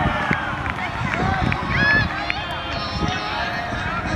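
Several voices of spectators and young players at a youth football match, calling and shouting over one another, with one high call about two seconds in.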